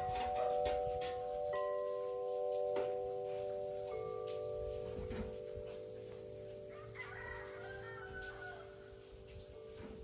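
Tubular metal wind chimes ringing in the breeze: several long, overlapping tones, with a new tube struck every few seconds and each tone slowly dying away.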